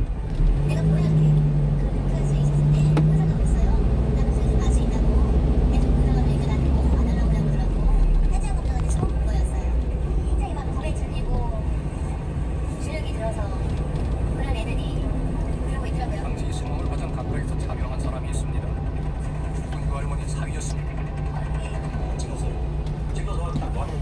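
A 1-ton truck's engine and road noise heard inside the cab as it moves through slow traffic. The rumble is heavier for the first eight seconds or so, then steadier, with faint voices from a TV broadcast underneath.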